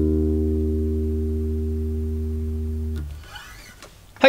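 A single low note on the D string of a five-string electric bass, plucked just before and left ringing, fading slowly, then damped about three seconds in.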